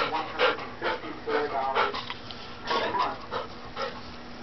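Golden retriever panting excitedly in quick, noisy breaths, about two a second, with a brief whine in the middle.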